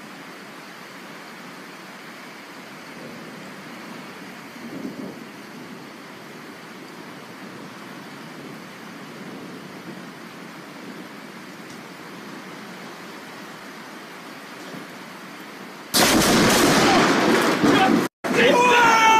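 Steady hiss of rain during a thunderstorm, then about sixteen seconds in a sudden, very loud crack of a close lightning strike that lasts about two seconds.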